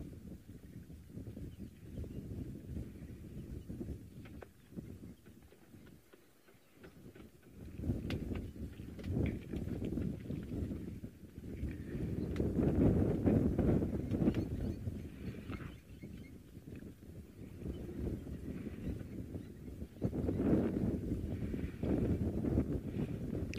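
Gusty storm wind buffeting the microphone, a low rumbling rush that swells and fades, with a brief lull about six seconds in and the strongest gusts past the middle.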